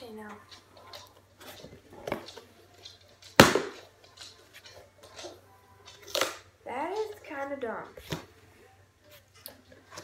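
A cardboard shipping box being opened by hand: flaps and contents rustling and scraping, with a loud sharp crack about three and a half seconds in.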